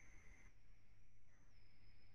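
Near silence: room tone with a faint low hum and a thin, faint high-pitched whine that steps slightly lower about one and a half seconds in.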